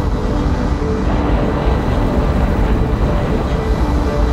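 Steady, deep roar of a big wave breaking and barrelling. Faint held music notes sit underneath.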